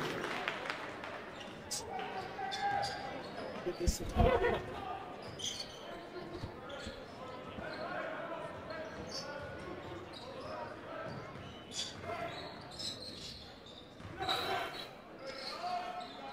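Basketball game sounds on a hardwood court: a ball being dribbled, with scattered voices of players and spectators in the gym.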